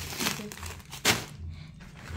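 Plastic snack packets and a carrier bag crinkling as groceries are handled and unpacked, with two louder rustles, one just after the start and one about a second in.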